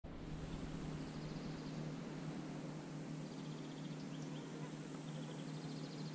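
Quiet riverside ambience: a steady low hum with faint, high chirping trills coming in three short bouts.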